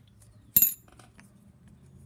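A small metal object clinks once, sharply, against a hard surface about half a second in, with a brief high ring, followed by a few faint ticks of handling small metal parts.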